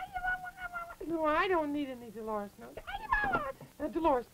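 A puppeteer's voice making wordless, whiny nonsense cries in place of speech, cat-like calls that glide up and down in pitch, the longest falling slowly about a second in.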